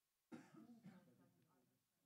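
A faint burst of a person's voice that starts suddenly about a third of a second in, breaks into a few short parts and trails off.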